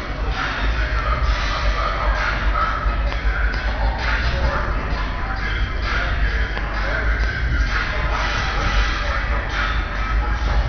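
Several car stereos playing different music at once, overlapping into a jumble with a heavy, continuous bass.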